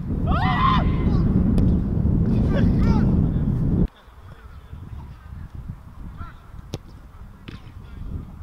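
Wind rumbling on the microphone, with two loud bursts of rising-and-falling calls in the first three seconds. About four seconds in the sound cuts abruptly to quieter outdoor noise, with a single sharp knock near the end.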